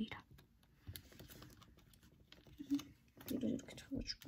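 Origami paper being folded and pressed down by hand: faint, scattered crinkles and small taps of the paper.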